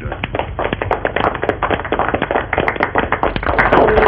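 A crowd applauding: a dense, uneven patter of hand claps with a dull, thin sound from an old, narrow-band soundtrack.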